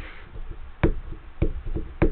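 Fingers rubbing and picking at sticker residue on a glossy book cover, with a few sharp knocks against the book. The loudest knock comes a little under a second in, a second one about half a second later, and smaller ones follow near the end.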